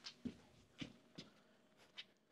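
Near silence, broken by three or four faint, short, soft rustles.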